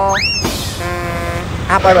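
Edited-in comedy sound effects: a quick rising whistle-like glide, a short burst of hiss, then a held, evenly pitched tone. A voice comes in near the end.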